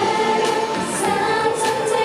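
Female idol group singing together into microphones over pop backing music: several voices on one sustained, gliding melody line.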